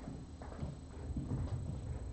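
Footsteps on a hard floor, a few irregular, fairly quiet steps walking away.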